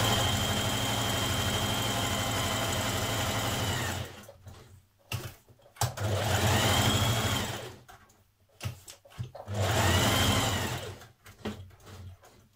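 A Singer electric sewing machine stitching. A steady run lasts about four seconds, then come two shorter runs that each speed up and slow down. Small clicks come in the pauses between runs.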